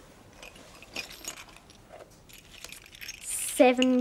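Small metal bells clinking and jingling faintly as they are handled in cupped hands, a few light scattered clinks rather than a steady ring; a girl's voice begins speaking near the end.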